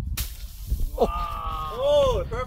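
A golf club swung through bushes: a sudden thrash of leaves and twigs just after the start, fading over most of a second. Then a man's long drawn-out exclamation that rises, holds and falls in pitch.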